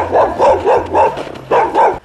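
A dog barking over and over in quick barks, about three or four a second, with a short break a little past the middle.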